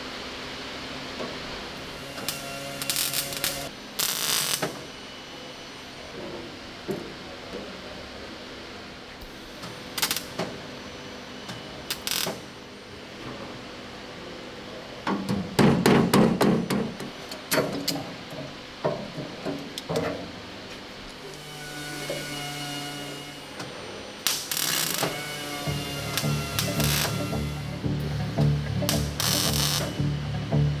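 Hand-tool strikes on sheet steel: scattered single blows, then a quick run of rapid hammer blows about halfway through, over background music.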